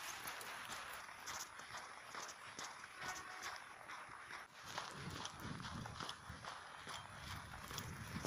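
Footsteps in fresh snow at a steady walking pace, about two steps a second, faint.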